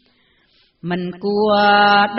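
Khmer smot, a woman's solo chanted Buddhist verse. A brief pause for breath, then the voice comes back in about a second in with long held notes, slowly ornamented.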